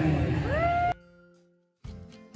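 A man's voice amplified through a handheld microphone, mixed with party noise, cuts off abruptly about a second in. After a moment of silence, soft background music with a steady beat starts near the end.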